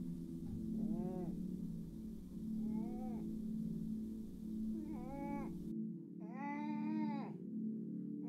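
A person whimpering in short, high cries that rise and fall, four in all, the last one longest and loudest, over a low steady droning tone.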